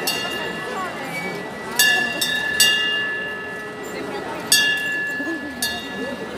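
A small bell on a tourist road train, struck about four times at uneven gaps of a second or two, each strike ringing on clearly before it fades, over crowd chatter as the train passes close by.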